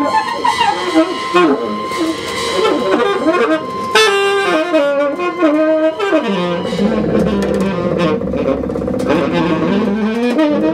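Free-jazz improvisation: saxophone playing restless, bending and gliding lines over drums and bowed double bass. About six and a half seconds in, the music settles onto a long held low note.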